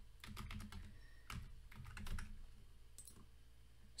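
Faint computer keyboard typing: a quick run of keystrokes, then a couple more clicks a second later.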